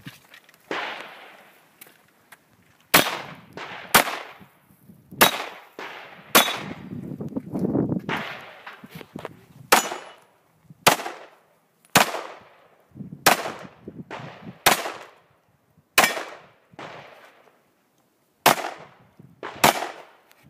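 Pistol shots fired one at a time, about a dozen in all, roughly a second apart, each followed by a short echo. There are two pauses, one in the middle and one before the last two shots.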